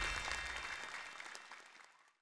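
Faint applause fading out together with the last low note of the closing jingle, dying away by the end.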